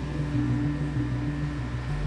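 Low, steady droning hum from the film's sound design, its low tones shifting in small steps every fraction of a second.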